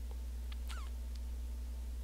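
Steady low electrical hum, with a few faint, brief squeaky chirps and a tick about half a second to a second in.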